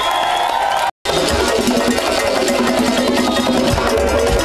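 Live Afro-Cuban rumba: several conga drums played by hand with other percussion, and a voice singing over them in the first second. The sound cuts out completely for a moment just before one second in, then the drumming carries on.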